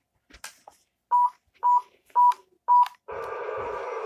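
RC toy train powering up after being switched on: a faint click, then four short, even beeps about two a second, then a steady hum starting about three seconds in.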